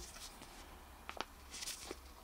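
Faint rustling of a small paper sticker sheet being handled between the fingers, with a couple of light ticks about a second in and near the end.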